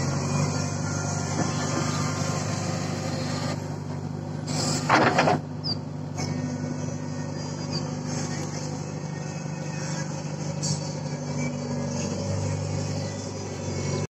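JCB backhoe loader's diesel engine running steadily under digging work, with a loud burst lasting under a second about five seconds in.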